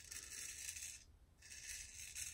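Straight razor blade scraping through lathered stubble on the jaw and neck: two faint rasping strokes, the first lasting about a second and the second starting about a second and a half in after a short pause.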